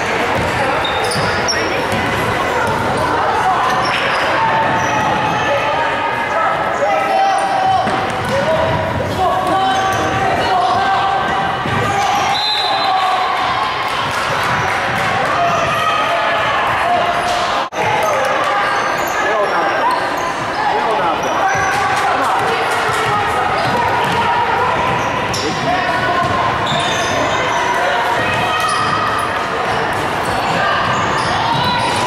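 Basketball game in a gym: a ball bouncing on the hardwood floor amid continuous shouting and calling from players and spectators, echoing in the large hall.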